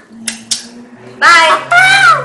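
Two quick sharp sounds near the start, then a child's high-pitched, drawn-out vocal cry in two held parts beginning about a second in.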